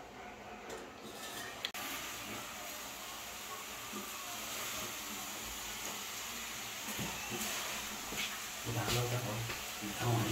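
Steady room noise with faint background talk, a single sharp click about two seconds in, and a person's voice speaking clearly in the last second or so.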